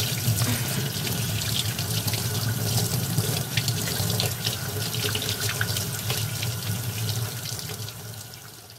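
Steady running water splashing, with a dense low rush and many small spatters and drips, beginning to fade at the very end.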